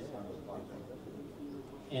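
Faint male speech, low and indistinct, in short phrases with brief gaps; a much louder voice comes in right at the end.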